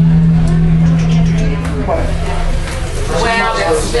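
A steady low hum that stops about two seconds in, with people talking near the end.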